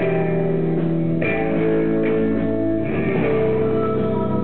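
Live rock band playing an instrumental passage led by electric guitar, sustained chords changing about a second in and again near three seconds.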